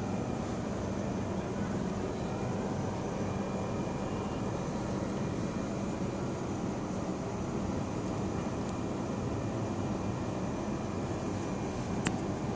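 A steady low mechanical drone, a motor or engine running without change.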